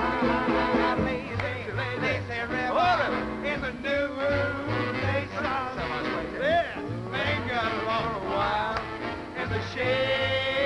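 Swing band music with a stepping bass line under a lead melody that scoops and bends in pitch.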